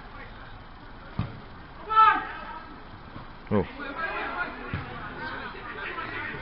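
Voices at a football match: one loud, short shout falling in pitch about two seconds in, a man's 'oh' a little later, and scattered murmuring voices, with a couple of faint knocks.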